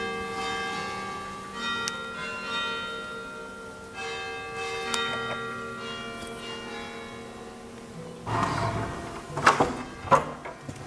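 Church bells ringing, overlapping strokes that hang and slowly fade, with fresh strokes every second or two. Near the end, a louder rustling noise and a sharp knock.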